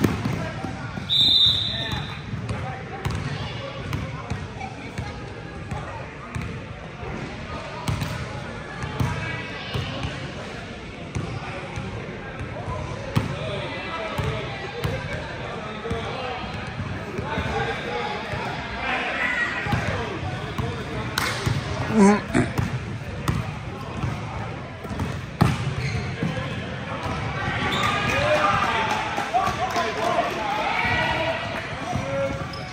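Basketball game in a large gym: the ball bouncing on the court, with players and spectators calling out throughout. A short, shrill referee's whistle sounds about a second in.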